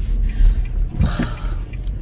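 Car cabin noise while driving: a steady low rumble of road and engine heard from inside the moving car.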